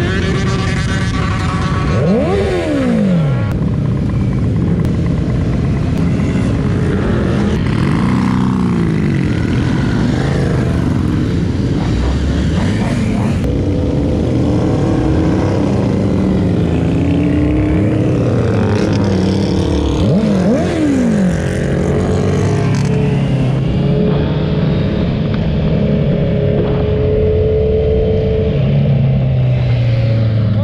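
Several sportbike engines running and revving as a group of motorcycles pulls away. Bikes pass close by, their pitch sweeping up and falling away twice, about two seconds in and again about twenty seconds in.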